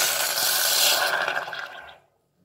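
Water poured into a hot stainless-steel pot of heated turmeric and ginger, hissing and sizzling as it hits the hot metal. The hiss fades away over the last half second.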